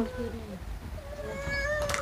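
A cat meowing: one long drawn-out meow starting about half a second in, with a short click near the end.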